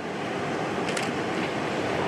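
Ocean surf washing in, a steady rush of breaking waves with a brief louder surge about a second in.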